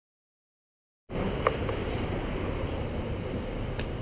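Silence for about the first second, then steady wind and road noise on a bicycle rider's camera microphone while riding, with two brief clicks.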